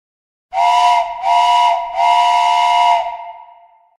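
A steam whistle sounding three blasts, two short and one longer, each a steady two-note chord over a hiss of steam, the last trailing away.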